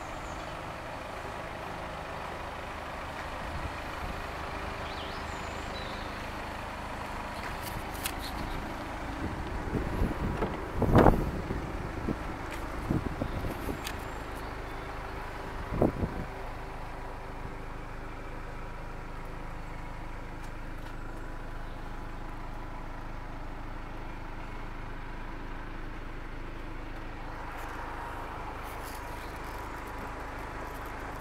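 A steady vehicle hum throughout. About ten seconds in comes a burst of knocks and clatter as the car's door is handled and opened, with one more sharp knock about sixteen seconds in.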